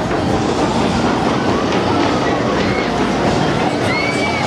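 Fairground ride cars rumbling and clattering along a steel track, over a steady noisy wash of wind on the microphone and crowd voices.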